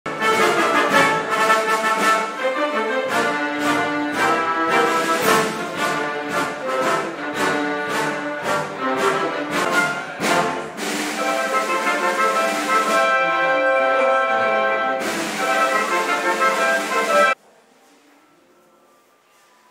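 A chamber orchestra with strings and piano playing a classical-style piece with many sustained notes. The music cuts off abruptly near the end.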